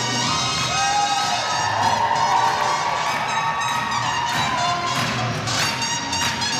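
Swing dance music playing through loudspeakers in a large hall, with the audience cheering and whooping about a second in.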